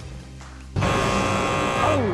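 Game-show wrong-answer buzzer: a loud, harsh buzz that comes in suddenly about three-quarters of a second in and holds, sounding a strike as the red X appears on the board.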